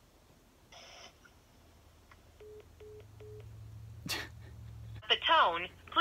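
Smartphone on speakerphone placing a call: three short electronic beeps over a low hum, then a click, then an automated voicemail greeting starts talking near the end.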